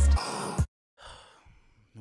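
Intro music ending on a last bass hit and cutting off, then a short silence and a faint breath in just before speech begins.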